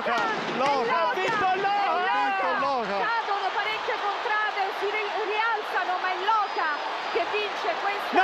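Excited male TV commentator shouting over the dense noise of a large crowd. After about three seconds his voice gives way to many scattered shouting voices in the crowd.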